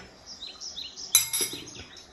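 A small bird chirping in the background in short, falling calls, with a sharp metal clink about a second in as a spoon is set down on the board.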